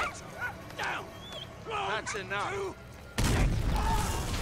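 Men's voices with a short exclamation, then about three seconds in an artillery shell explodes with a sudden loud blast that keeps going as a dense, noisy roar.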